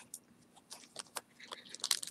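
Small plastic zip bags of jewelry being handled, giving quiet crinkles and light clicks. They are sparse at first and come quicker near the end.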